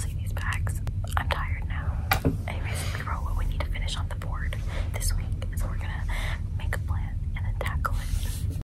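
A woman whispering to the camera in short phrases, over a low steady hum.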